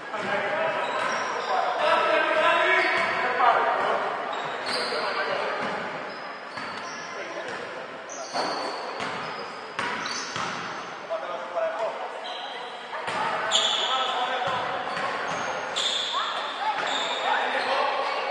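Basketball dribbled and bouncing on a hardwood gym floor, with players' shouts and brief high squeaks, echoing in a large hall.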